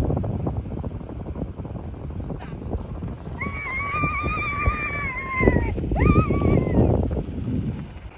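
A child's long, high-pitched shout that wavers and then falls away, followed by a second, shorter shout. Gusty wind rumbles on the microphone underneath.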